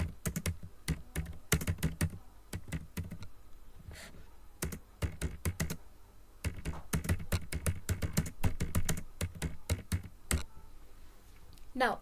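Typing on a computer keyboard: irregular runs of quick keystrokes with short pauses, stopping about ten seconds in.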